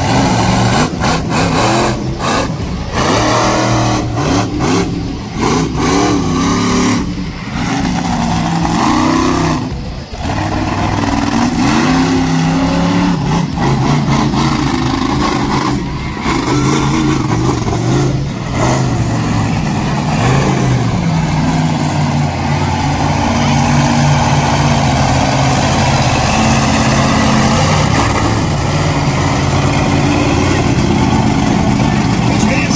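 Monster truck engine revving hard, its pitch rising and falling repeatedly as the throttle is worked through freestyle moves, then holding a steadier high rev through the last third.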